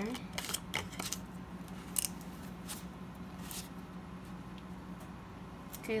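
Red plastic screw-on cap being twisted back onto a plastic coffee creamer bottle: a few light clicks and scrapes during the first three and a half seconds.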